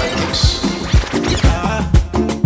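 Afrobeats/Naija hip-hop DJ mix playing with a steady kick drum about twice a second, with a brief high DJ scratch effect cutting in over it about half a second in.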